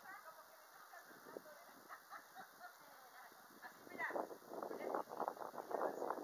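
Faint, indistinct human voices, growing louder about four seconds in.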